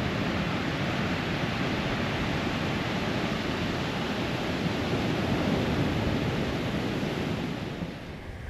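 Ocean surf washing onto a sandy beach, a steady rushing noise with some wind on the microphone; it drops a little right at the end.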